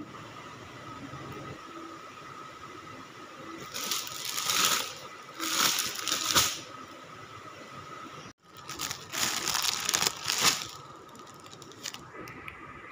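Clear plastic wrapping crinkling and rustling as it is handled on a cloth handbag, in three uneven bursts.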